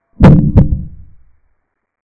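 A chess-capture sound effect: two sharp, deep thuds about a third of a second apart, dying away within about a second, marking the king taking a pawn on the animated board.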